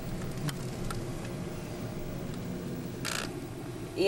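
Steady car cabin noise: a low engine and ventilation hum heard from inside the car, with a few faint handling clicks and a short burst of hiss about three seconds in.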